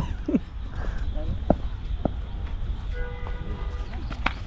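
A steady low outdoor rumble with a short falling exclamation just after the start and two light ticks about a second and a half and two seconds in.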